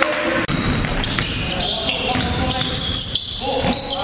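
Indoor basketball game sound: a basketball bouncing on a gym floor amid players' voices. The sound cuts out briefly about half a second in.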